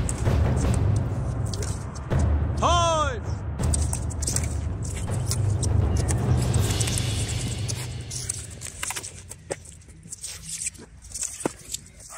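Wind rumbling on the microphone through most of the clip, with a short shout about three seconds in. In the last few seconds the wind drops and several sharp clacks are heard as the sparring swords strike.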